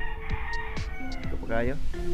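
A rooster crowing, a call that rises then falls in pitch shortly before the end, over background music with held notes.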